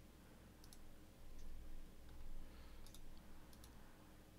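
A few faint computer mouse clicks, scattered over a low steady hum.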